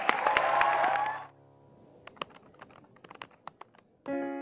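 Audience cheering and clapping that cuts off abruptly about a second in, followed by a string of sparse, sharp clicks.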